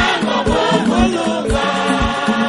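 Choir of many voices singing a worship song together over a steady low beat, about two strokes a second.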